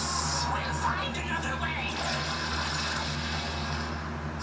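Television soundtrack heard through the room: a falling sci-fi teleport sound effect about halfway through, over background music and a steady low hum.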